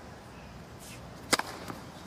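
A single sharp crack of a tennis racket striking the ball on a serve, about midway through, that goes for an ace. A steady low background hum runs beneath it.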